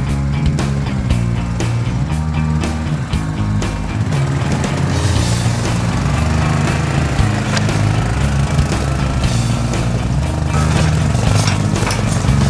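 Background music with a steady beat, laid over an ATV's engine running beneath it.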